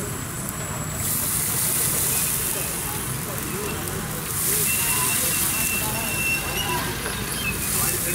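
Gas burner flame running under a steel wok of heating liquid, with a loud hiss that swells about a second in and again near the middle. Voices chatter in the background.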